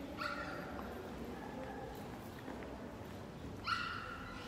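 Two short, high-pitched yelps, one just after the start and one near the end, over a faint low hum.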